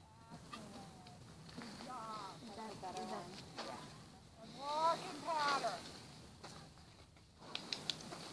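A voice calling out from a distance in two short runs of unclear syllables, about two and five seconds in, the second louder; a few sharp clicks come near the end.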